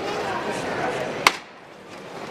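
A single sharp wooden knock about a second in, over a murmuring crowd: the float's llamador (metal knocker) struck once, the signal for the bearers to make ready to lift.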